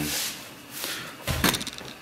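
A short knock about one and a half seconds in, in a pause between spoken words.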